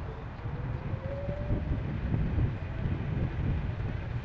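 Wind rumble on the microphone and road noise from a moving electric bicycle, steady throughout, with a faint thin whine rising slightly in pitch during the first second or so.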